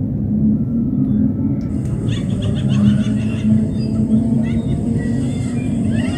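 Steady low rumble of a river's rushing water with some wind on the microphone. From about two seconds in, splashing and faint distant voices join it as an elephant wades through the water.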